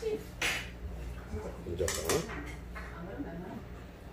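Metal chopsticks clatter lightly against small side-dish bowls while a leaf wrap is assembled, with a short murmur from a man about two seconds in.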